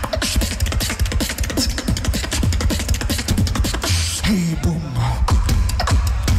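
Competition beatboxing through a microphone and PA: a fast, tight drum pattern of kicks, snares and hi-hats over a deep bass line. A little after four seconds in there is a falling bass sweep.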